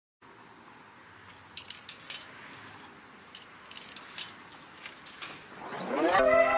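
Faint steady hiss scattered with sharp clicks and crackles, then a rising swell near the end that leads into the song's opening.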